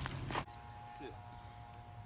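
Brief rustling handling noise from a handheld camera for about half a second. Then a quiet stretch with a faint steady hum.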